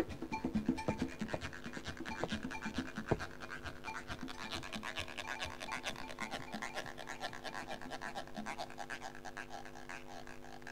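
Latin jazz percussion near the end of a track: a fast, even rhythm of short scraping strokes over a few held low notes. Deeper drum hits drop out about three seconds in, and the whole sound gradually gets quieter.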